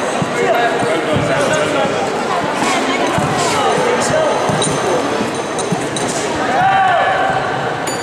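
Scattered thuds of taekwondo sparring, feet landing and padded kicks and punches striking, in a large sports hall, over onlookers' voices calling out.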